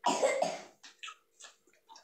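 A single cough in the first half-second, followed by a few faint short clicks.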